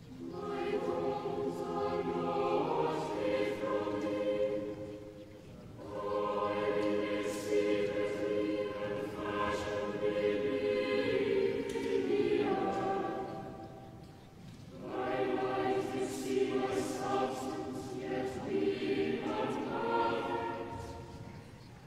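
A choir singing slow, sustained phrases, with brief pauses between phrases about five seconds in and again near fifteen seconds.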